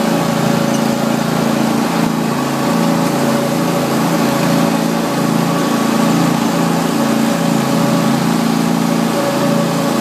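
Exmark Lazer Z zero-turn mower engine running steadily under way, its pitch wavering slightly.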